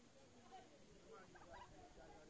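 Near silence, with faint, distant voices of players calling out on the pitch.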